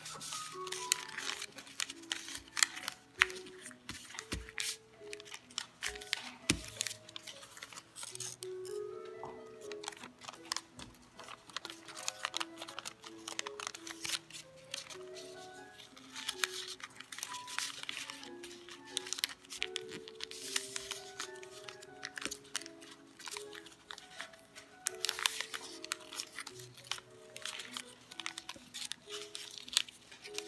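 Background music of short stepped notes, over the crinkling and creasing of origami paper being folded by hand, in frequent sharp crackles.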